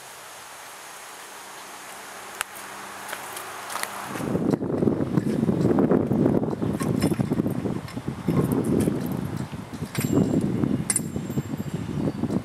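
Quiet outdoor hiss for about four seconds, then a loud, uneven rumble of wind buffeting the microphone, with a few light metallic clinks of keys working a door lock.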